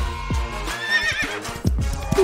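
Horse whinny, with hoof clip-clops, over background music; the wavering whinny comes about a second in. It is an edited-in sound effect for a toy horse.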